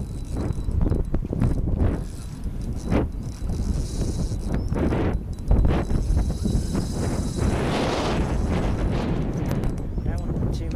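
Spinning reel worked while a hooked fish pulls on the bent rod: its mechanism clicks and whirs over a steady low rumble of wind on the microphone, with a rushing hiss about eight seconds in.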